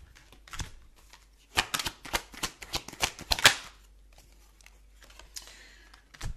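A deck of tarot cards being shuffled by hand: a few flicks, then a quick run of card slaps lasting about two seconds, fading to faint rustling.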